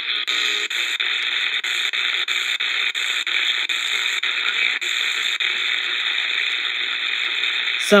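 Shortwave static hiss from the small speaker of an Eton Elite Mini radio. The hiss dips with a brief mute about three times a second as the tuning steps up the 49-metre band, then runs steady for the last few seconds. Faint station audio sits under it, taken for WABC breaking through, a flaw of this radio.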